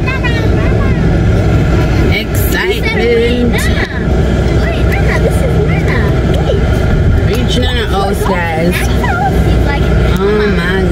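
Car cabin road and engine rumble from driving, a steady low noise, with voices talking over it now and then.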